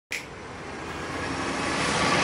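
Vehicle engine and traffic noise, a steady noisy sound that grows gradually louder, after a short click at the very start.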